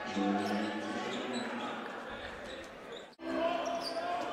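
Basketball game court sound in an arena: crowd murmur and play on the hardwood court, with a few short high squeaks. The sound drops out briefly about three seconds in at an edit cut, then resumes.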